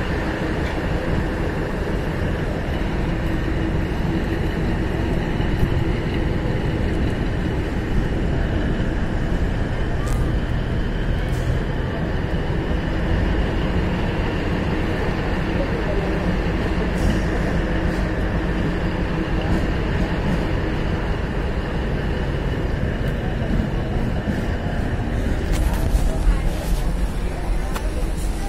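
Diesel-electric multiple unit (DEMU) train running: a steady rumble of its engine and wheels on the track, heard from on board, with a few faint clicks.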